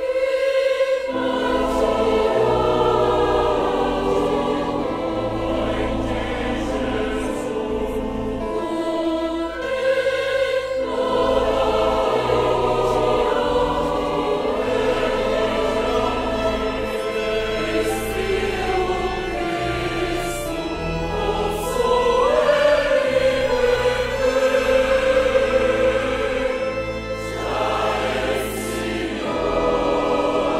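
Mixed choir of women and men singing a hymn in Portuguese, with keyboard accompaniment holding low notes underneath.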